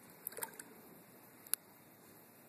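Quiet room with a short cluster of light taps about half a second in and one sharp click about a second and a half in, from a watercolour brush working on paper at a table.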